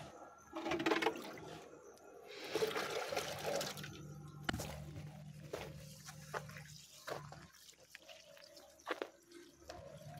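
Water sloshing and gurgling as a plastic chicken drinker is dipped and filled in a concrete water tank, then water poured out onto soil, with a few knocks along the way.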